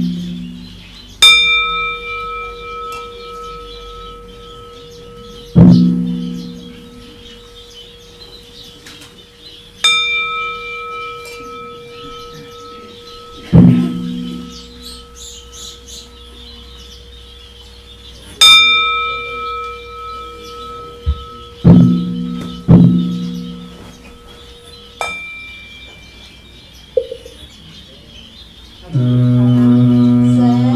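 Buddhist ritual bell struck four times, about every eight and a half seconds; each strike rings on for several seconds. Deep hollow knocks fall between the bell strokes, two of them close together about two thirds of the way in. A man's chant starts about a second before the end.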